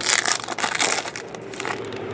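Foil wrapper of a 2007 Sweet Spot baseball card pack crinkling and crackling as it is pulled open and peeled off the cards, in a run of bursts that die down near the end.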